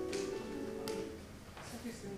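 A recorded music excerpt played back quietly over the hall's speakers during a volume test, with held notes that fade out about halfway through.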